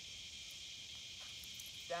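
A steady, high-pitched insect chorus droning without a break.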